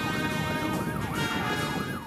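Metropolitan Police car siren sounding a fast yelp, its pitch sweeping up and down about four times a second.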